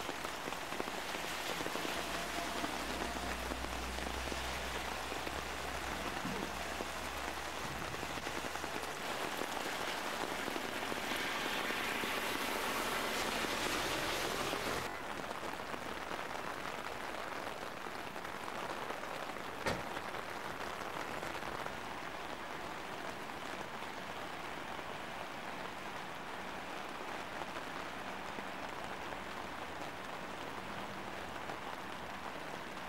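Steady hiss of rain and rushing floodwater from a river in spate, louder in the first half, with a low rumble in the opening seconds. About halfway through the sound changes abruptly to a softer, even hiss of rain, and one sharp click comes a few seconds later.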